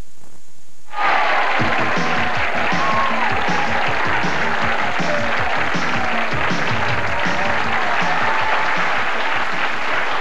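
Studio audience applauding and cheering over upbeat theme music with a regular beat, starting suddenly about a second in.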